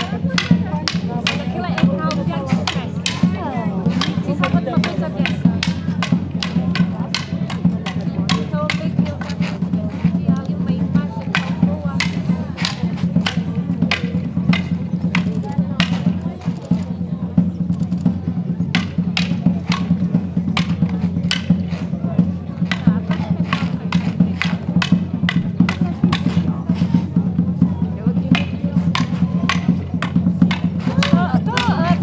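Wooden staves clacking against each other in quick, irregular strikes during a stick-fighting display, over drumming and a steady low drone.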